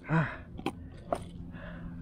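A short low grunt with a falling pitch, then two sharp clicks as pliers and a lure knock together while the hook is worked out of a landed crevalle jack's mouth on the kayak deck.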